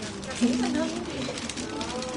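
Several people talking at once at close range, overlapping voices with no single speaker standing out.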